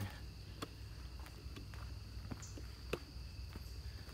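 A steady high-pitched insect chorus, with footsteps on dry leaf litter about once a second.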